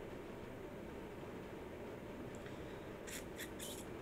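Quiet room tone: a steady low background hiss, with a few brief, soft hissy sounds about three seconds in.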